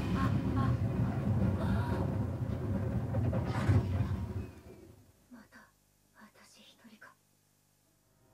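Soundtrack of an anime episode playing in a cinema, loud and low for about four and a half seconds, then dropping to a quiet stretch with a few short, soft voice sounds.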